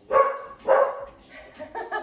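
Pet dog barking in greeting as a family member comes into the house: two loud barks in the first second, then a few quieter ones near the end.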